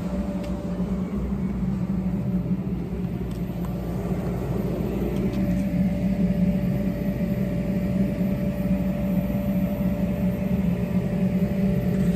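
A steady motor hum with one constant mid-pitched tone over a low rumble. About five seconds in, a lower tone slides down in pitch.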